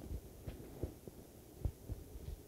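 Faint scattered low thumps and knocks, a few irregular ones about half a second apart to a second apart, over a low steady hum of room tone.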